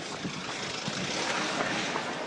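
A road vehicle passing, heard as a broad rushing noise that swells about midway and then eases off.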